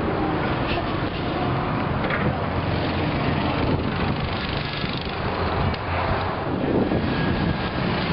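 A vehicle engine running nearby: a steady low rumble under an even wash of outdoor noise.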